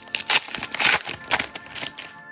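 Foil wrapper of a football trading-card pack crinkling and tearing as it is ripped open and the cards are pulled out: a dense, irregular run of sharp crackles.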